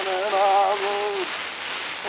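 Archival wax-cylinder recording of indigenous Mexican singing (Cora and Huichol songs), one voice chanting a held, slightly wavering line under the cylinder's loud steady surface hiss. The voice stops a little past halfway, leaving only the hiss.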